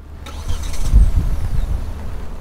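Kia Seltos SUV's engine starting by remote start, heard from outside the car. It cranks and catches, flares up about a second in, then settles back toward idle.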